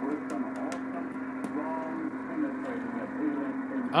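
Receiver audio from an SDRplay RSP2 software-defined radio running CubicSDR in upper-sideband mode: a harmonic of a local AM broadcast station. It plays a faint, muffled voice over a steady low tone.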